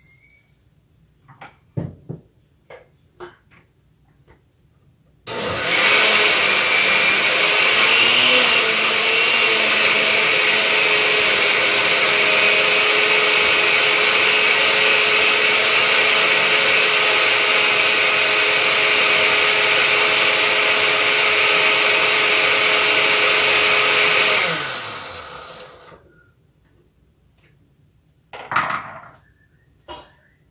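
Countertop blender running for about twenty seconds as it purées raw cassava (yuca) with water, then winding down after it is switched off. A few light knocks come before it starts and a short knock follows near the end.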